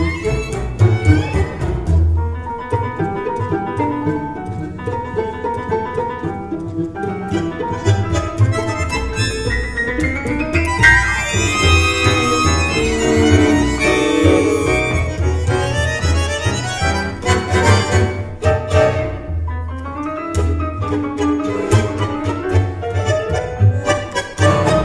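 Tango orchestra of piano, double bass, two violins, viola and two bandoneons playing a milonga: a steady, driving bass and piano pulse under busy bandoneon and violin lines, with longer held melody notes in the middle.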